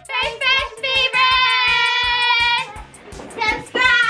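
A girl singing loudly over background music with a steady beat. About a second in she holds one long wavering note for about a second and a half, then sings again near the end.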